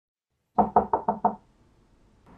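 Five quick knocks on a door in a rapid, even run, about six a second, lasting under a second.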